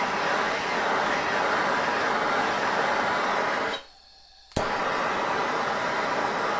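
Propane turbo torch flame hissing steadily while it heats the end of a hard-drawn copper pipe to red heat. The hiss drops out briefly about four seconds in and comes back with a sharp click.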